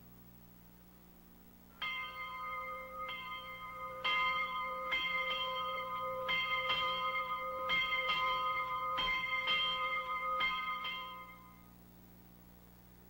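A bell rings out in about a dozen strikes, each with the same clear ringing tone, at uneven intervals of roughly half a second to a second. It starts about two seconds in and dies away shortly before the end.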